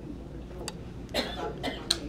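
A single cough from someone in the room about a second in, followed by a couple of short clicks, over a low steady room hum.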